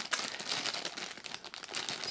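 Thin clear plastic bag crinkling irregularly as it is handled and turned over in the hands.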